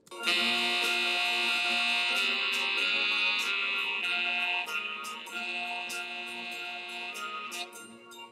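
A song's audio clip playing back in a loop in music software, starting abruptly: held chords with bright high tones over a light, regular beat, turning quieter from about halfway through.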